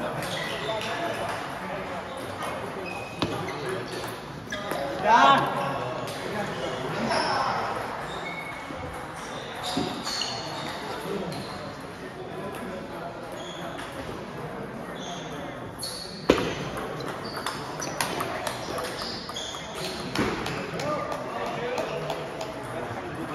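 Table tennis balls clicking off bats and the table in scattered, irregular sharp ticks, the loudest about sixteen seconds in, over voices in a large hall.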